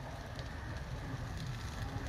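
Steady outdoor background noise with a low rumble, in a pause between speech.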